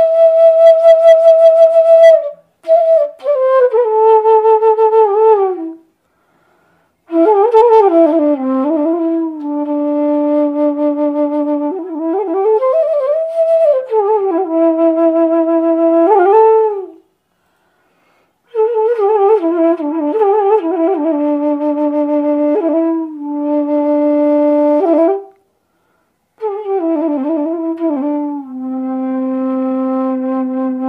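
Bamboo bansuri (side-blown flute) played solo: a slow melody of held notes with a wavering pitch and slides between notes. It comes in several phrases with short pauses between them.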